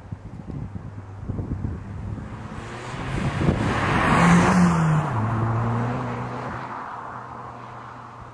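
A Mitsubishi Colt CZT hatchback with a turbocharged 1.5-litre four-cylinder driving past: engine and tyre noise build to a peak about four seconds in, the engine note drops in pitch as the car goes by, then fades away.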